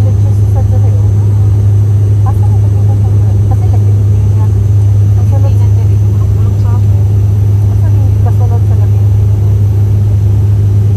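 Steady drone of an airliner in flight, heard inside the passenger cabin, with a strong, unchanging low hum. Faint talking sits underneath it.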